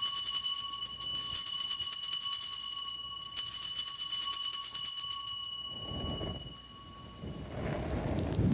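Altar bells rung at the elevation of the consecrated host: a rapid shaken jingle in two runs of about three seconds each, with a brief break about three seconds in. The bells then ring on and fade away over a couple of seconds.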